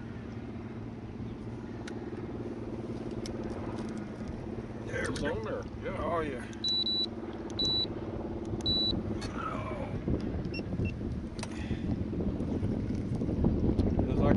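A steady low motor hum, with three short high-pitched electronic beeps about halfway through.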